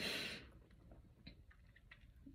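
A woman's breathy laugh trailing off in the first half second, then near silence with two or three faint clicks.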